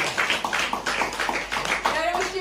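Applause: many hands clapping in a quick, dense, irregular patter.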